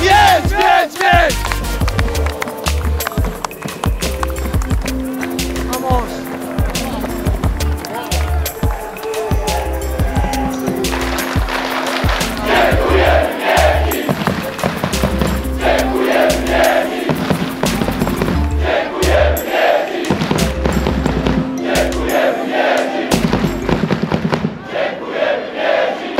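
Background music with a steady beat and bass line, with shouting at the start and a voice over the music from about halfway.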